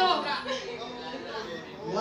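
Indistinct talking and chatter of several voices, loudest at the very start and then quieter, with no clear words.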